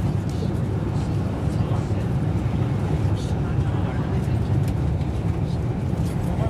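Steady low rumble of a Class 390 Pendolino electric train running at speed, heard inside the passenger saloon.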